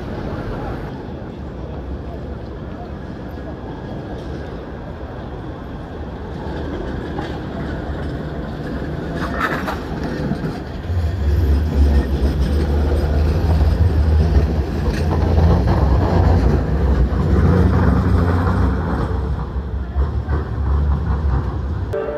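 Manchester Metrolink tram, a Bombardier M5000, rolling past on street track at close range. Its deep rumble swells about halfway through, holds for several seconds and eases off near the end, over busy street noise.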